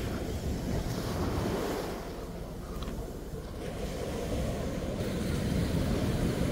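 Surf washing in against a sea wall, a steady rushing noise with wind on the microphone.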